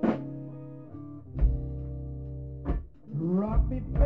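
Electric blues band playing: electric guitar notes ringing over bass and drums, with a note bent upward about three seconds in.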